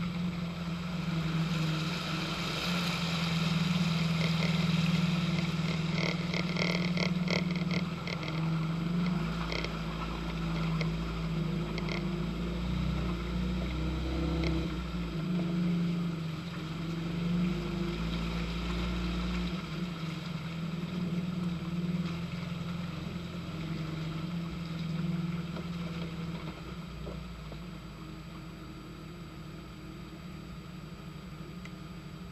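Mercedes-Benz 230GE G-Wagen's four-cylinder petrol engine running steadily as it drives over a muddy, waterlogged off-road track. A quick run of hits from mud and water thrown against the body comes about six to twelve seconds in, and the sound settles quieter near the end.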